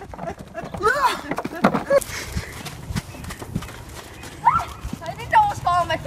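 Hoofbeats of a horse trotting on a lunge line, with a person's voice briefly about a second in and again near the end.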